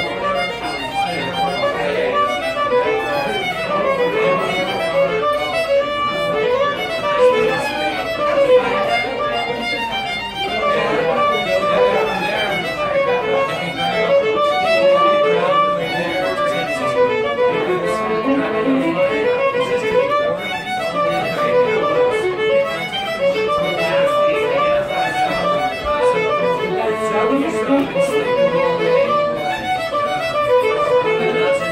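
Fiddle played with the bow, a quick tune of short notes following one another without a break.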